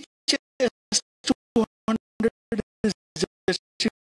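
Stuttering broadcast audio from a lagging live stream: short garbled snippets of sound, about three a second, each cut off sharply by silence.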